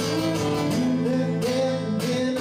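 Acoustic guitar strummed steadily alongside a bowed fiddle playing long, sliding melody notes in a live acoustic duo.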